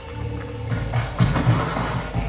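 Film soundtrack effects played through the OXS Thunder Pro+ soundbar and heard in the room: a low rumble with a few deep thuds in the second half.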